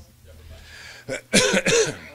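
A man coughing close to a microphone: a short cough about a second in, then two louder coughs in quick succession.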